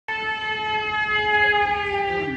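A single long held musical note, one steady pitch rich in overtones, dipping slightly lower about halfway through.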